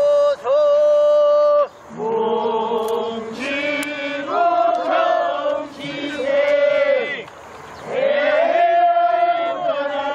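Korean folk rice-planting work song sung by a group of men in call and response. A single voice holds a long note at the start, then the planters answer together in chorus in drawn-out phrases, ending on another long held group note.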